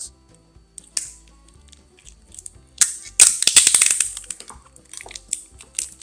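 Wide packing tape pulled off its roll: a loud, rapid crackle starting about three seconds in and lasting over a second, then smaller crackles as it is wrapped around two aluminium tubes. Soft music plays underneath.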